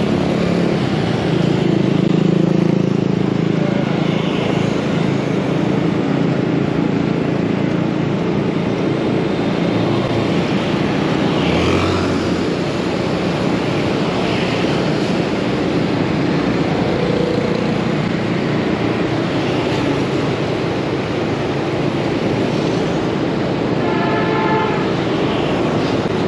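Motorbike engine running steadily under way, with the noise of the surrounding scooter traffic: a continuous low drone with road noise above it.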